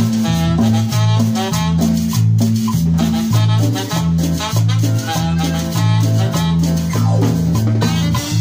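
A live band playing Latin dance music: a repeating electric bass line, a drum kit and a metal güira scraped in rhythm, with keyboard melody notes above.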